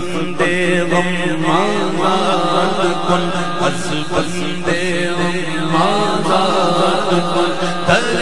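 A man singing a manqabat (Urdu devotional song) solo through a microphone and PA, his voice wavering and gliding through long melismatic lines over a steady low drone.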